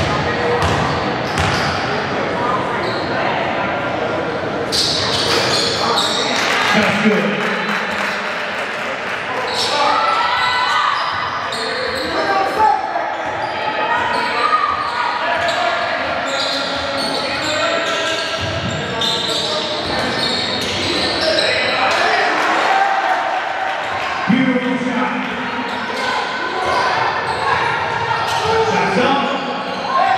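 Basketball game in a gym: a basketball bouncing on the court in repeated sharp knocks, with players' and spectators' voices calling out, echoing in the large hall.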